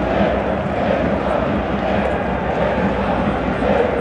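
Football supporters' crowd in a stadium stand, many voices chanting together in a loud, steady din.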